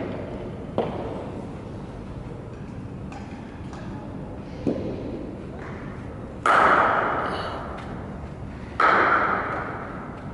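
Cricket bat striking a ball: two loud cracks about six and a half and nine seconds in, each ringing out in the hall, with lighter knocks earlier.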